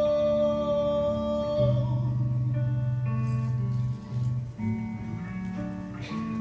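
Live blues band: a held sung note ends about a second and a half in. The band plays on with a bass line and resonator guitar.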